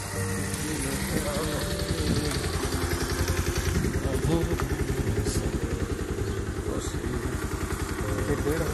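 Motorcycle engine running close by with a steady, rapid firing pulse, heard from the pillion seat as the bike moves off.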